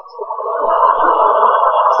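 A studio audience laughing, swelling over the first half-second and then holding steady. It is heard through the TV's speakers and picked up in the room.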